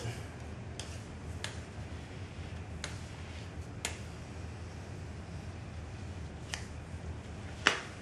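Scattered sharp clicks, about six, the loudest near the end: a plastic card used as a squeegee clicking against glass as Windex is pushed out from under Monokote covering film.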